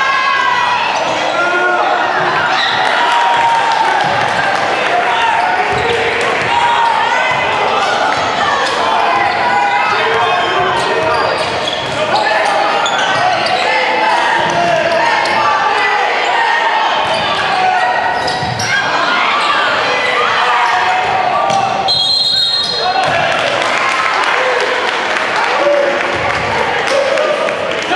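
Basketball dribbled and bouncing on a hardwood gym floor in a large echoing hall, under steady indistinct voices of players and spectators. A short, steady, high referee's whistle sounds near the end.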